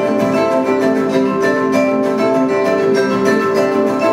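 Acoustic guitars playing an ensemble passage of a chacarera, the traditional Argentinian folk rhythm, with vibraphones accompanying.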